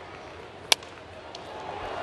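Low ballpark crowd noise, with a single sharp crack of a bat hitting a pitched baseball a bit under a second in.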